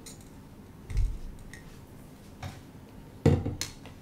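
Dull thumps and a short clatter from a hand iron being pressed down on quilt pieces on a wool pressing mat and then set aside. The loudest thump comes about three seconds in.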